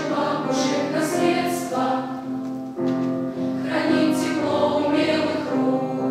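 Children's choir singing a song in several voices, with piano accompaniment.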